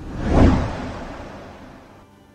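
A whoosh sound effect from a news ident's logo transition: one sweep that swells to a peak about half a second in, then fades away.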